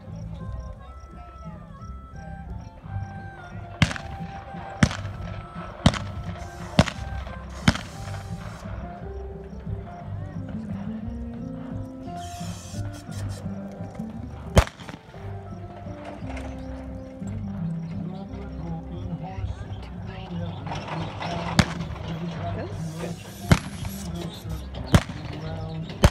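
Single-action six-shooters firing in a cowboy mounted shooting run: five shots about a second apart a few seconds in, one lone shot near the middle, then four more spread over the last few seconds, ten in all. A western song plays over the arena sound system throughout.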